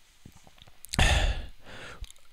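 A man's single sigh, a breath out into a close microphone about a second in, starting sharply and fading away.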